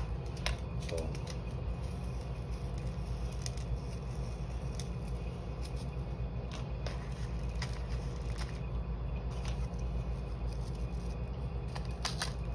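Light clicks and rustles from a small seasoning packet being handled and flakes sprinkled onto shredded cheese on a paper plate, over a steady low hum.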